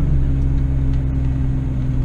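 Car engine and road noise heard from inside the cabin while driving, a steady low drone.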